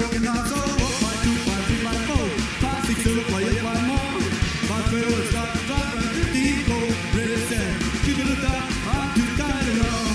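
Live rockabilly trio playing a fast song on hollow-body electric guitar, upright double bass and drum kit, with a steady driving beat.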